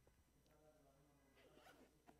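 Near silence: room tone with faint rustling and a few soft clicks.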